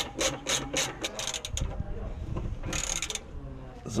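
Ratchet wrench clicking in a quick run of strokes, about four a second, then metal rubbing and scraping with a short rasp near three seconds in. It is tightening the nut that secures a new tie rod end on the front steering linkage.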